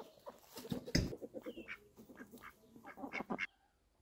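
Chickens clucking and calling in short notes as they forage, with a low thump about a second in. The sound cuts off suddenly shortly before the end.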